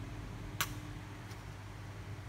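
Fingers handling a hard clear-plastic toy figure: one sharp click about half a second in and a fainter one after it, over a steady low hum.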